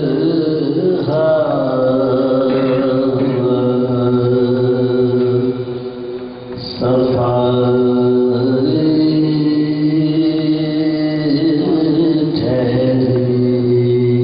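Male voices chanting a marsiya in soazkhwani style, drawing out long held notes. The chant breaks off briefly about six seconds in and resumes a second later.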